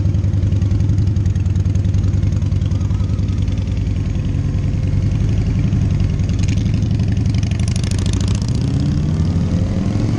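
Motorcycle engine idling steadily, then climbing in pitch near the end as the bike accelerates away.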